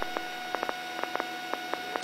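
Steady electrical hum with faint, irregular clicks on the helicopter crew's intercom audio line, with no one talking and the rotor noise gated out.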